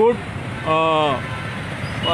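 A man's voice says a short word, then draws out another with a falling pitch, over a steady background of road traffic.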